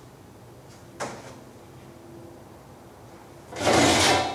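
Faint steady background hum with a single sharp click about a second in, then near the end a loud sliding scrape of a cabinet drawer being pulled open.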